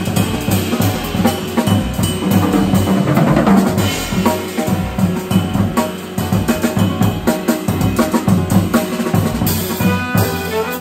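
Jazz drum kit (Canopus) played with busy, continuous hits on snare, bass drum and cymbals.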